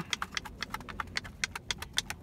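Rapid, uneven light clicks and taps, about six or seven a second.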